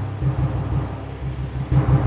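Several sidecar motorcycle engines running together in a low, steady rumble with a quick uneven beat.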